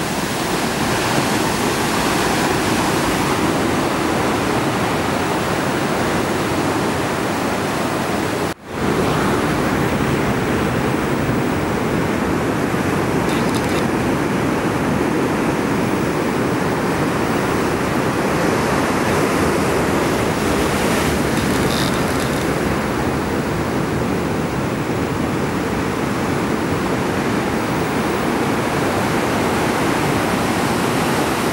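Ocean surf breaking and washing over rocks: a steady, even roar of waves and foam, cut off for a moment about eight or nine seconds in.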